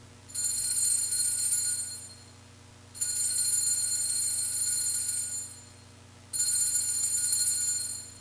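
Altar bells (Sanctus bells) rung three times, each ring a bright chord of several high tones lasting about two seconds and fading before the next, marking the elevation of the chalice at the consecration.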